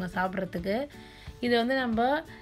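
A woman's voice speaking, with soft background guitar music.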